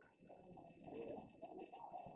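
Near silence: quiet room tone in a hall, with a faint low wavering murmur.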